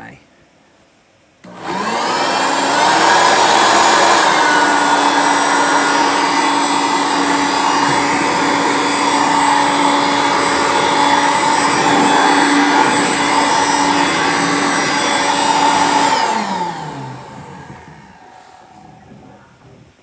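Dirt Devil Ultra corded hand vacuum switched on about a second and a half in: its motor spins up with a rising whine and runs loud and steady. About sixteen seconds in it is switched off and winds down, the whine falling in pitch as it fades.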